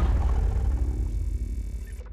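Deep low rumble of a logo-intro sound effect, the tail of a hit, fading steadily away over about two seconds.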